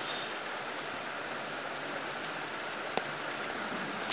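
Steady hiss of room and microphone noise, with a few faint clicks.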